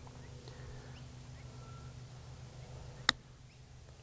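A 48-degree pitching wedge striking a golf ball on a chip shot: one sharp click about three seconds in, over a faint low hum.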